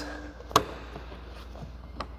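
A single sharp click about half a second in as the rear seatback release of a Chevrolet Cruze is pulled, with a couple of faint ticks after it; the seatback does not fold, stuck on the other side. A low steady hum runs underneath.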